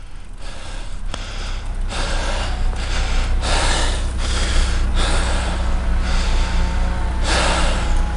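Heavy breathing close to the microphone, coming in several loud gusts, over a steady low rumble of traffic idling in a queue.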